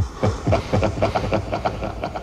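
Deep, rattling snarl-roar of a horned film demon: a quick run of pulses, about eight a second, over a low rumble.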